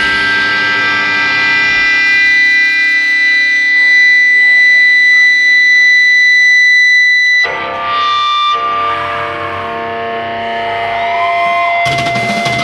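Effects-laden electric guitars holding long, ringing chords with no drums, an ambient drone between heavy passages. About seven seconds in the drone cuts abruptly to a new held chord, and a note bends in pitch near the end.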